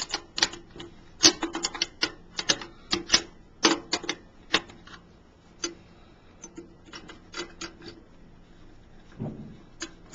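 Irregular sharp metallic clicks and taps of an open-end wrench on a brass nut, loosening the temperature-gauge fitting of an autoclave sterilizer. The clicks come thick and fast in the first half, grow sparser, and there is a brief rub near the end.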